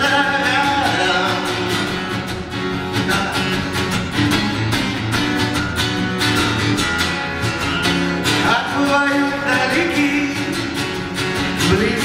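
A man singing with his own strummed acoustic guitar, the voice gliding between held notes over steady strumming.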